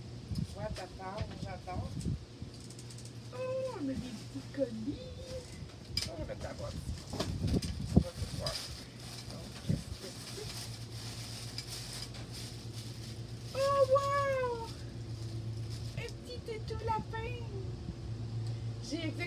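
Tissue paper and packaging rustling and crinkling with scattered sharp clicks as items are unwrapped by hand. A woman's wordless exclamations rise and fall in pitch several times, over a steady low hum.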